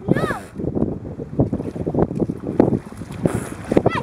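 Wind buffeting the microphone. A child's brief high call, rising and falling, comes just after the start and again near the end.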